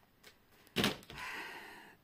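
Tarot cards being handled as cards are drawn from the deck: a sharp snap a little under a second in, then a soft rustling hiss that fades within the next second.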